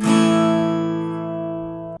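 Acoustic guitar strumming an A major chord fretted with one finger barring the D, G and B strings: a single strum that rings on and slowly fades, then cuts off abruptly.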